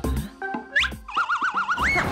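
Cartoon sound effect: a quick upward whistle, then a wobbling, warbling boing tone that slides up again at the end. It plays over light background music with a beat.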